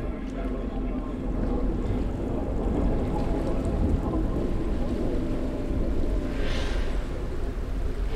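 Steady, low, rumbling wind-and-water ambience. About six and a half seconds in, a hissing rush swells and fades, like a gust or a wave washing in.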